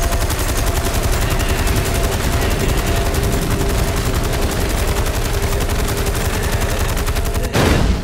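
Sustained, rapid machine-gun fire from a boat's deck-mounted gun in a film soundtrack, a fast even train of shots that cuts off near the end.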